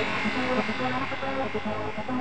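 Oldschool hardcore (gabber) music in a breakdown: a buzzing synth line that steps in pitch, without the heavy kick drum.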